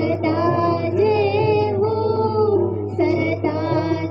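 A high voice singing a melodic devotional song with musical accompaniment, its long held notes wavering, in phrases that break about a second in and again near the end, over a steady low hum.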